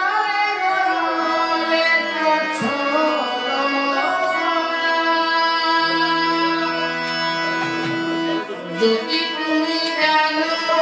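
Live Bengali Baul folk song: a man singing over long held accompaniment notes, with hand-drum strokes coming in near the end.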